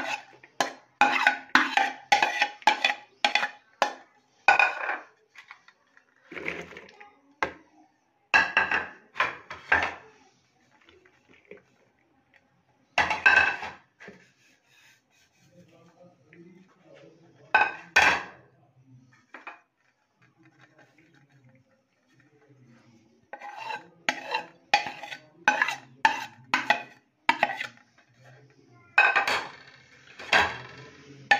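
Steel spoon clinking and scraping against ceramic plates as food is knocked off them into a bowl: quick runs of taps with a short ring, busiest in the first few seconds and again near the end, with single strikes and pauses in between.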